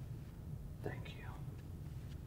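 A brief, quiet, breathy vocal sound, like a whisper, about a second in, over a steady low room hum.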